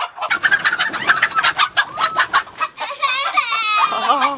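Chickens clucking and squawking close by: a fast, loud run of short calls, then a longer wavering call near the end.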